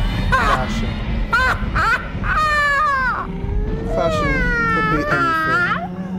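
A woman's high-pitched vocal cries imitating a cat's meow, coming out more like a ghoul: a few short yelps, then longer drawn-out wails that slide down and back up in pitch. A steady low drone runs underneath.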